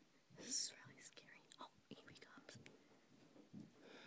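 Faint whispering in the dark, with a breathy hiss about half a second in as the loudest moment, then scattered soft whispered fragments and small clicks.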